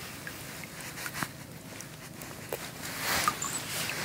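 Soft water splashing and dripping as a tench is lifted by hand out of the shallow water, swelling about three seconds in, with a few faint clicks of handling before it.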